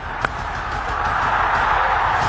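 Cricket bat striking the ball once, a sharp crack about a quarter second in, followed by stadium crowd noise swelling into a cheer.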